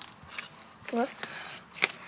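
Dry peat moss handled and crumbled in a plastic pot, giving soft rustling and a few sharp clicks. A short voiced syllable comes about a second in.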